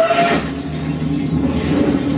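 Logo intro sound effect of an online music-video channel playing back: a short rising tone over a swelling whoosh, which settles into a steady, heavy rumble.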